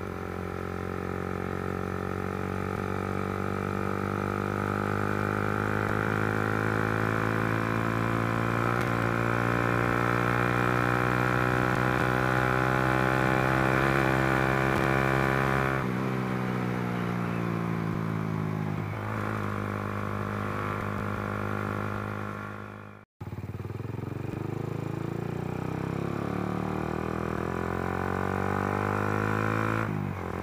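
Suzuki Satria F150's single-cylinder engine running through a LeoVince GP Corsa carbon full-system exhaust, bass-heavy, while the motorcycle is ridden. The revs climb steadily for about fifteen seconds, then drop and fall away as the throttle eases. The sound cuts out abruptly a little after twenty seconds, then the engine returns at a steady pace.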